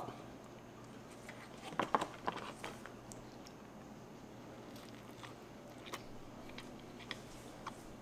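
A person biting into a bacon cheeseburger on a toasted bun and chewing: a cluster of short clicks about two seconds in, then quiet chewing with a few faint clicks.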